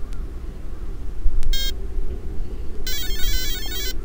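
An RC helicopter's electronic speed controller beeping through the motor in stick-programming mode: one short beep about one and a half seconds in, then a quick run of several notes near the end. These are the tones that step through the programmable items, here moving on from item 1 (brake) to item 2. A steady low rumble runs underneath.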